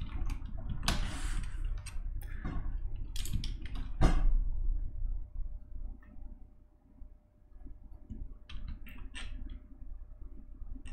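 Typing on a cheap wireless computer keyboard: irregular key clicks, thickest in the first few seconds, sparse for a while past the middle, then a few more near the end.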